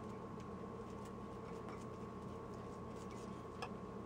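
Quiet room with a steady low hum, and a few faint light clicks of a metal spoon against a ceramic baking dish while soft ground chicken is spread in it.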